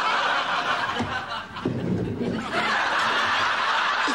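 Sitcom studio audience laughing, the laughter easing briefly about halfway through and then swelling again.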